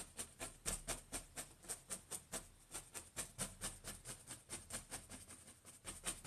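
Oil-paint-loaded brush tapping against a stretched canvas on an easel, dabbing in tree foliage: a steady run of soft taps, about five a second.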